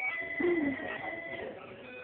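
Simple electronic toy tune of held, stepping notes from a baby walker's duck toy tray, with the baby giving a short coo about half a second in.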